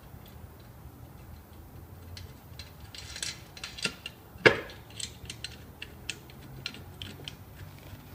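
Wheel nuts clicking and clinking against the steel wheel and its studs as they are put on and turned by hand, in a scatter of small irregular clicks. One sharper metallic knock about halfway through is the loudest sound.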